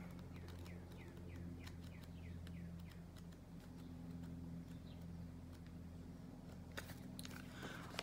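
Faint paper rustling and soft page flicks as a card guidebook is leafed through, with a quick run of flicks in the first few seconds, over a low steady hum.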